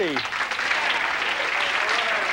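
Studio audience applauding steadily, with the tail of a man's voice at the very start.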